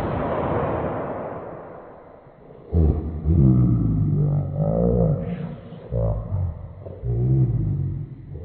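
Toy balloon deflating: air hisses out of the neck and fades over about two seconds. Then the rubber neck vibrates in a loud rasping buzz that wavers up and down in pitch, in three stretches.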